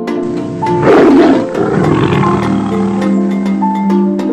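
A tiger's roar: one loud, rough roar about a second in that fades away over the next second, over background music with a steady run of tuned notes.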